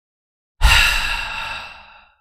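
A man's long sigh, made for dramatic effect: one exhalation that starts suddenly about half a second in and fades away over the next second and a half.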